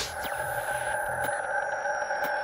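Synthesized logo-intro sound effect: a steady, held chord of ringing electronic tones with faint high sweeps gliding down through it.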